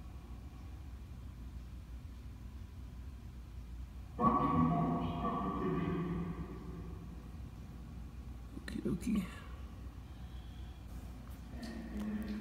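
Sound from a smartphone spirit box app playing through the phone's speaker as the app starts: a sudden sound with many steady tones comes in about four seconds in and fades over a few seconds, and a short gliding sound follows near nine seconds.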